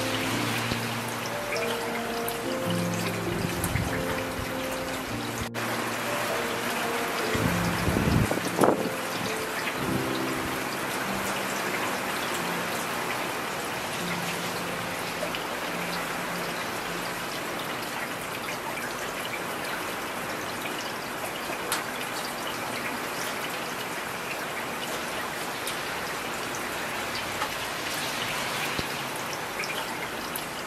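Steady rain hissing throughout, with soft, slow ambient music over it in the first half. A brief low rumble comes about eight seconds in.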